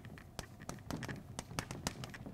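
Chalk writing on a blackboard: an irregular run of short, sharp taps and scratches as the letters are stroked out.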